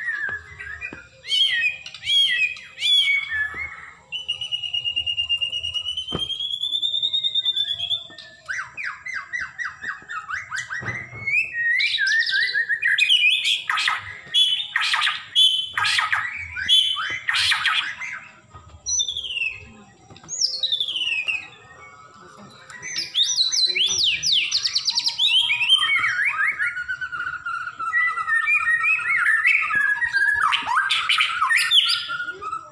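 White-rumped shama of the Bahorok type singing a varied run of whistles, trills and rapid chattering phrases, with a long wavering whistle from about four to eight seconds in and dense, loud song through the second half.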